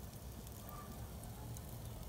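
Faint crackling and sizzling of lit charcoal and freshly spritzed pork spare ribs on a Weber kettle grill, over a low rumble.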